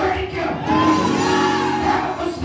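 Live church music: a man singing into a microphone in long held, gliding notes over a band with hand drums.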